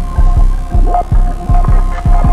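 Music: a throbbing low pulse, about four beats a second, under two steady droning high tones.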